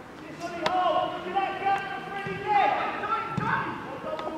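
Footballers shouting and calling to each other during play, with a sharp thud of a football being kicked about half a second in.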